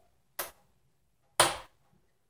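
Two sharp plastic snap clicks about a second apart, the second louder: a Snap Circuits two-snap conductor being pressed down onto the metal snaps on the base grid.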